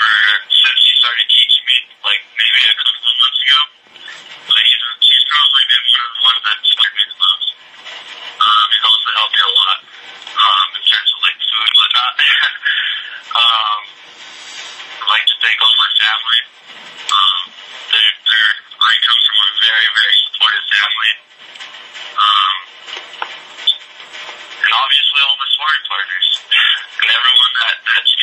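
Speech only: a man talking, in phrases with short pauses.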